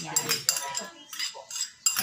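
A spoon scraping and knocking against a bowl in a run of sharp clicks as a thick mango ice cream mixture is scraped out into a plastic tub.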